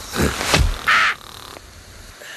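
Cartoon character's vocal noises: two short low grunts, then a short harsh squawk about a second in.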